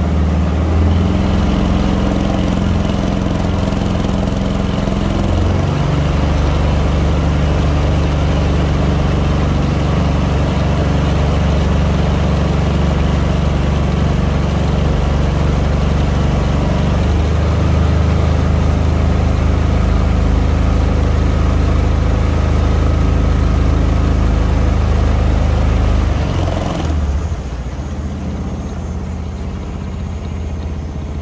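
Mokai motorized kayak's small gasoline engine running steadily under way, its pitch stepping up and down a few times with the throttle. About 27 seconds in it drops lower and quieter.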